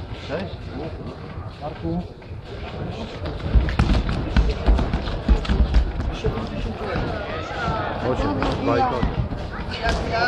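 Heavy dull thuds of wrestlers' bodies and feet on the wrestling mat, a cluster about three and a half to six seconds in, among voices shouting from the mat side.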